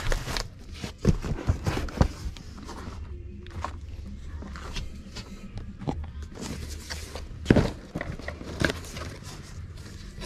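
Cardboard boxes being lifted and handled: irregular knocks, scuffs and rustles of cardboard, with the sharpest knock about seven and a half seconds in.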